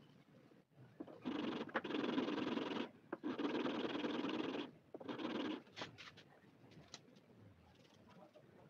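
A modified nail-buffer file rubbed back and forth along a metal guitar fret wire in three spells of rasping, the last one short, to grind the flattened fret back to a rounded crown. A few light clicks follow near the end.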